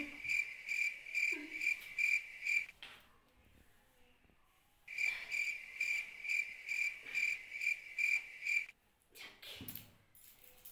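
Cricket-like chirping: short, high chirps at one steady pitch, about three a second. It breaks off for about two seconds a few seconds in, then resumes and stops again near the end.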